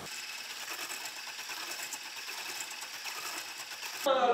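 Electric whisk running in a stainless steel bowl of batter: a steady motor whir with a fast, fine rattle.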